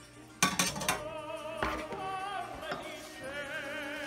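Music with a singer holding long notes with vibrato. About half a second in there are a few sharp clinks of a utensil against a metal pan as the ravioli go in.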